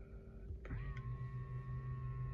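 Tesla Model 3's power-folding side mirrors unfolding: a click, then a steady electric motor whine that carries on to the end.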